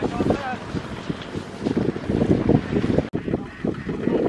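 Kubota ZT155 power tiller's single-cylinder diesel engine running in a rough, rapid chug, with wind on the microphone and voices. The sound breaks off for an instant about three seconds in, then resumes.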